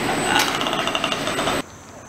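Loud, steady machinery din with a thin high whine and a click about half a second in. It cuts off abruptly after about a second and a half, leaving quiet outdoor ambience.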